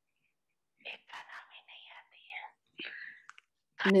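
Faint, whispery speech, low in the mix, beginning about a second in after a moment of silence; louder speech starts right at the end.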